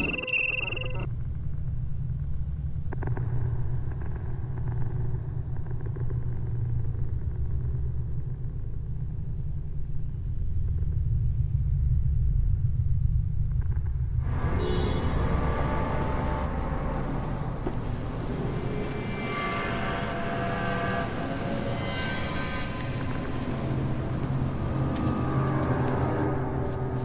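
A deep, steady soundtrack rumble under a production logo. About fourteen seconds in, brighter ringing tones and shimmer join it.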